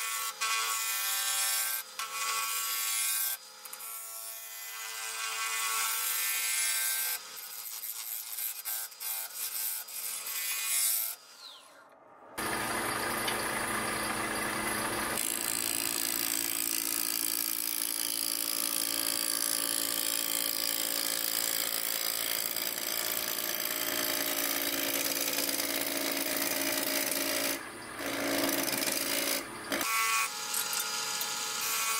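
Wood lathe spinning a wooden spatula blank while a gouge cuts it, shaving wood with a rough scraping hiss over the lathe's steady hum. About twelve seconds in, the sound drops away for a moment, then comes back louder and denser as the cut goes on.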